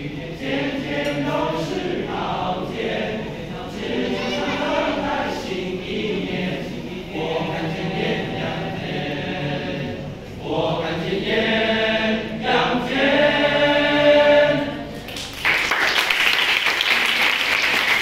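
Boys' choir singing a Chinese New Year song in Mandarin, rising to a loud held ending chord about fourteen seconds in. The song ends and an audience starts applauding about fifteen seconds in.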